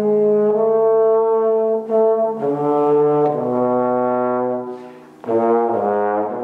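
Trombone playing a slow solo line of held notes, changing pitch every second or so. About five seconds in the tone fades away, and a new phrase begins with a quick run of notes.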